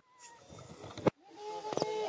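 Baby macaque crying in short, wavering calls, cut off abruptly twice by sudden gaps.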